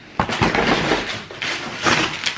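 Rustling and crinkling of a plastic shopping bag and the snack packaging inside it, handled while the next item is taken out; it starts suddenly about a quarter of a second in.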